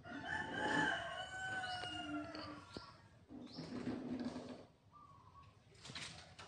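Rooster crowing once, a long call of about two and a half seconds that falls away at the end, followed by a fainter, shorter sound about three and a half seconds in.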